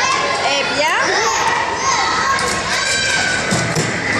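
Children shouting and chattering in a large indoor hall, a steady babble of high voices.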